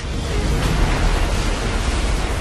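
A loud rushing noise with a deep rumble underneath and no clear tones, typical of a trailer sound-design whoosh. It swells slightly in the first second.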